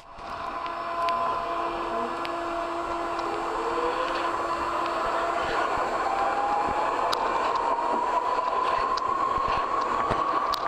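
A moving train, picked up through a piezo contact microphone on the surface of a jackfruit riding on the seat: a steady running noise with held whining tones, one of them rising slowly in the second half, and scattered small clicks. It fades in over the first second.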